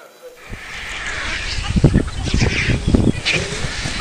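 Quiet room tone, then about half a second in an abrupt cut to much louder outdoor sound: a low rumble of wind on the microphone with a voice.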